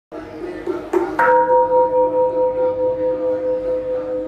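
A metal bell struck about a second in, ringing on in one long tone that wavers about four times a second as it slowly fades.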